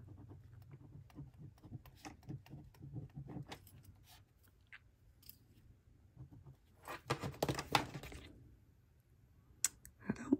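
Faint scratching and ticking of a multi-pen's tip writing on thin planner paper in short strokes, a little skippy on this paper. About seven seconds in comes a brief, louder rustle of handling.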